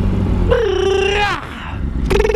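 2006 Yamaha R1's engine running under steady riding, with a drawn-out, wavering, voice-like call about half a second in that falls in pitch, then holds, then breaks off.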